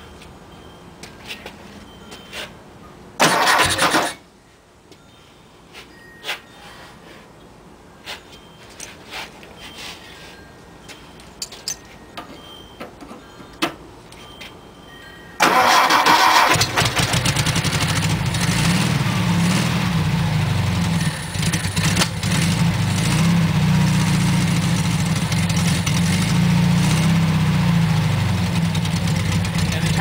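Scattered light clicks and one short loud burst about three seconds in. Then, about halfway through, the 1957 VW Beetle's air-cooled 36 hp flat-four engine starts suddenly and settles into a steady idle.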